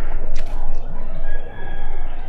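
A faint, drawn-out bird call starting about halfway through, over a steady low background rumble.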